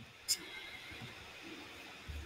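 Quiet gap in speech: faint steady hiss with one short click about a third of a second in.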